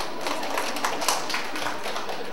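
A quick, irregular series of light taps and clicks, the sharpest about a second in.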